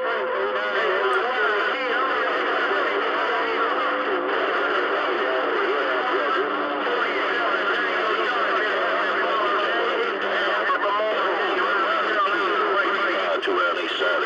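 CB radio receiving distant skip on channel 28: several stations talking over each other in a garbled jumble of voices that can't be made out, with steady low tones under them.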